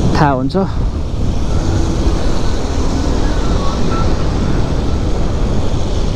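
Steady rush of wind on the microphone and road noise from a motorcycle riding on a wet road, with a background song faintly underneath. A sung line slides down in pitch in the first half-second.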